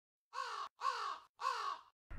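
A crow cawing three times, each caw a harsh, slightly falling call of about half a second with short gaps between.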